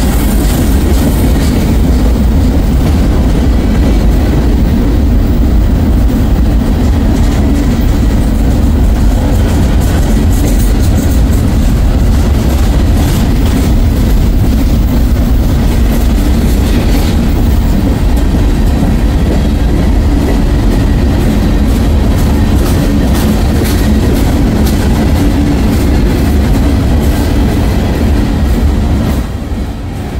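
Freight train cars (tank cars and boxcars) rolling past at close range: a steady, heavy rumble of steel wheels on rail, broken by many sharp clicks and clacks as the wheels cross rail joints. The sound drops sharply in loudness near the end.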